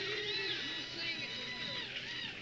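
Live bluegrass band music with sliding, wavering high notes.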